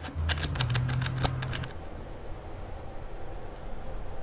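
Handling noise on a handheld camera's microphone: a quick run of clicks and knocks over a low hum for about a second and a half, then a steady low room noise.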